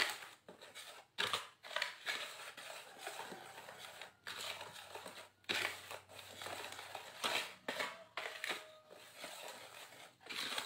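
Wire whisk stirring dry rice flour, tapioca flour and sugar around a bowl: irregular scraping strokes, a few of them louder than the rest.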